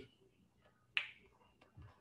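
One sharp click about a second in, in an otherwise quiet pause.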